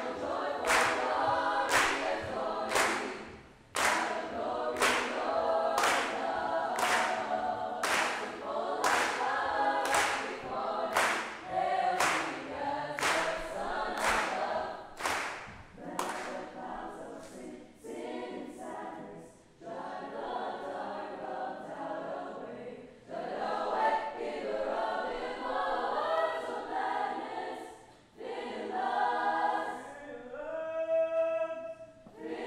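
Mixed choir of young voices singing, with a sharp, steady beat of clicks about twice a second that fades out past the middle.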